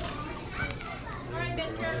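Background voices of children chattering and calling out, over a steady low hum.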